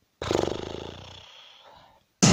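A woman's long, creaky groan of effort and pain, loudest at the start and fading away over about a second and a half, as she tries to haul herself out of bed while very sore and exhausted.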